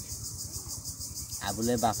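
Insect chorus: a high, evenly pulsing chirr that carries on steadily under a pause in conversation.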